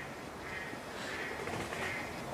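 Faint outdoor background with a few short, distant bird calls.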